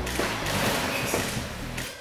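A wooden-framed rowing machine being worked through a stroke: a rushing whoosh that swells and then fades over about two seconds. Background music runs underneath.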